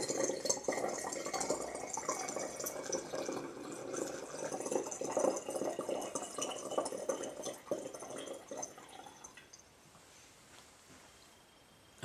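Rainwater poured from a bottle through a plastic funnel into a glass jar, splashing and gurgling steadily as the jar fills, then stopping about nine seconds in.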